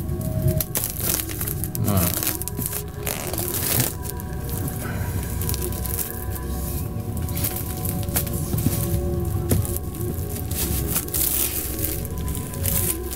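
Plastic shrink-wrap crinkling and tearing in irregular crackles as it is peeled off a box set, over quiet background music.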